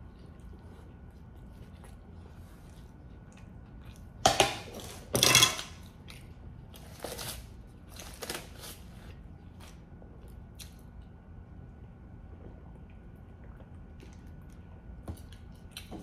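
Close-up eating sounds: chewing a bite of pastrami sandwich, with two louder bursts of mouth noise about four to five seconds in. Then a few soft rustles as nitrile gloves are peeled off.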